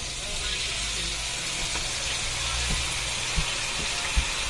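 Bell peppers and other vegetables frying in a hot wok, a steady sizzle as sweet chili sauce is poured in and stirred.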